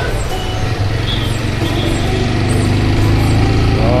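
Motorcycle engine running steadily under the rider, with road and wind noise, as the bike picks up speed.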